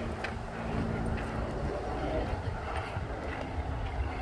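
Footsteps on a dirt trail over a steady low rumble, with a few faint steps about a second apart.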